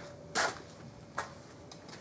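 Brief handling noises as parts are picked up off a shop towel: a short rustle about a third of a second in and a small click just after a second, over a faint steady hum.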